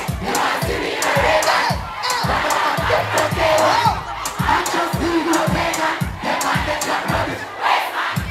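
Live dancehall performance over a PA: a riddim with a steady bass-drum beat, a deejay chanting into a microphone, and a crowd shouting along.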